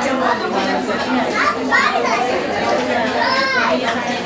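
Several women talking over one another at once: steady, overlapping conversation and chatter with no pause.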